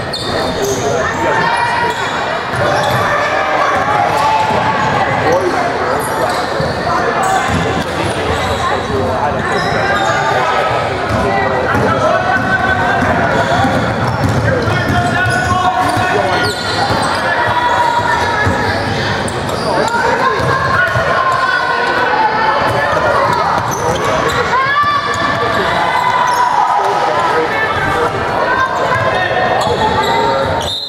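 Sounds of a basketball game in a gym: the ball bouncing on the hardwood court amid indistinct voices of players and spectators calling out, echoing in the large hall.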